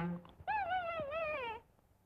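A cartoon animal's wailing cry on the soundtrack: one wavering call, about a second long, that rises and then slides down in pitch before cutting off.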